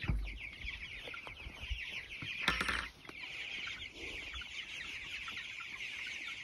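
A flock of young chickens peeping continuously, many overlapping high, falling cheeps. A brief knock comes about two and a half seconds in.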